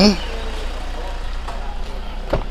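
Toyota Innova's 2KD four-cylinder turbodiesel engine idling: a steady low hum.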